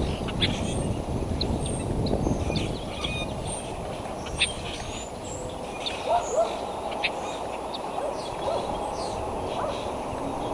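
Wind rumbling on an outdoor microphone, easing after the first few seconds. Short high bird chirps sound throughout, and a few short rising peeps come about six seconds in.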